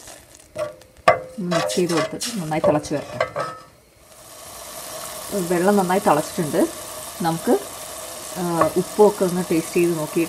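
A wooden spatula knocks and scrapes in a stainless steel pot of water with salt and a little oil. From about four seconds in, there is a steady hiss as the water comes to the boil.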